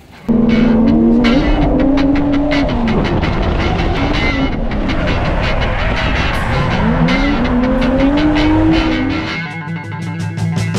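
Drift car engine revving hard, heard from inside the car, its pitch climbing and falling twice, under rock music with a steady beat.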